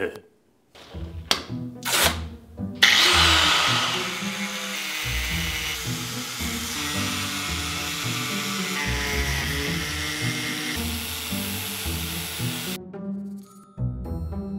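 Electric angle grinder cutting into a motorcycle helmet's shell: a loud, steady grinding that starts suddenly about three seconds in and stops shortly before the end. A few short, separate sounds come first as masking tape is handled.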